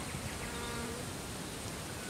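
Outdoor bush ambience in which an insect buzzes briefly close by in the first second. A steady high-pitched drone sits over it, with faint bird calls.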